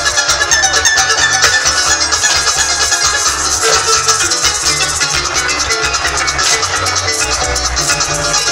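Live llanera band playing an instrumental passage over a PA: plucked strings and maracas over a steady bass, at a brisk, even rhythm.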